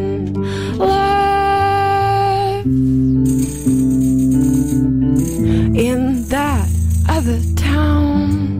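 Live acoustic music: two acoustic guitars play chords under a melody of long held notes, with a shaker rattling steadily throughout.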